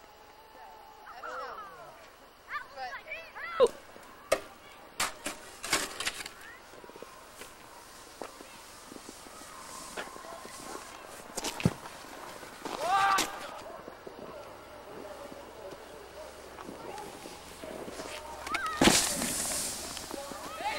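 Outdoor voices calling out, unclear and off-microphone, with scattered sharp clicks and knocks and a short rush of noise near the end.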